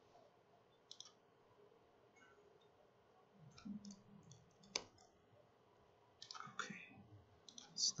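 Faint, scattered clicks of a laptop keyboard being typed on, a few at a time, with one sharper click a little before the five-second mark and a denser run near the end.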